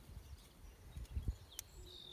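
Quiet outdoor ambience with a low rumble of wind on the microphone. About one and a half seconds in comes one faint metallic click as vise grips work a retaining clip onto a tractor's PTO shaft.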